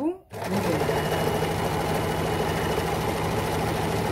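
Electric household sewing machine starting up and then running at a steady speed, stitching a seam through knit velour fabric.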